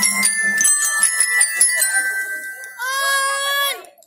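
Bell lyre struck with a mallet: a quick run of bright, ringing metal-bar notes over a lingering tone, thinning out about two and a half seconds in. Near the end a voice holds one long note for about a second, then the sound cuts off.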